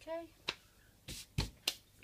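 A short vocal sound, then four sharp clicks and knocks as a metal springform cake tin is handled on a kitchen counter.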